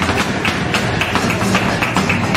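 Flamenco alegrías: a nylon-string flamenco guitar playing under quick, sharp percussive strikes from the dancer's footwork on the stage and handclaps (palmas).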